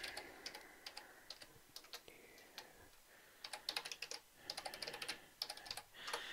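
Faint computer keyboard typing: a few scattered keystrokes, then a quicker run of keys from about three and a half seconds in.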